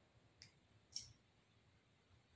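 Near silence with two faint, short clicks, about half a second and one second in, the second a little louder.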